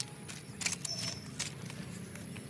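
Footsteps crunching on the loose stone ballast of a railway track, five or six uneven steps.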